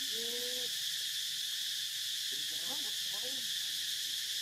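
Steady, high-pitched drone of an insect chorus. A short held call sounds in the first second, and brief voice-like calls come about two and a half seconds in.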